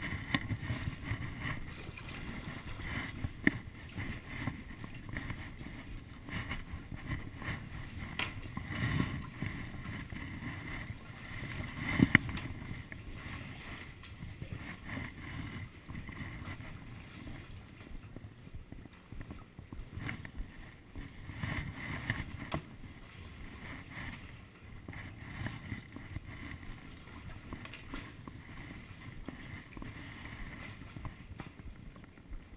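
Paddle strokes and water sloshing around a stand-up paddleboard, with a few sharp knocks, the loudest about twelve seconds in.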